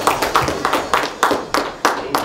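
Hands clapping in an even rhythm, about four claps a second, as applause at the end of a worship song, thinning out near the end.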